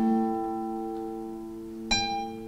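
Classical nylon-string guitar played solo: a plucked chord rings out and slowly fades, and a new chord is plucked near the end.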